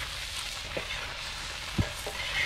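Whole shrimp sizzling in a hot shallow black metal pan over a campfire, being stirred with a knife and a wooden spatula. A couple of short knocks of the utensils against the pan, the loudest near the end.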